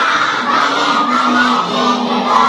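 A big group of children singing an action song in Telugu together, shouting the words loudly in unison.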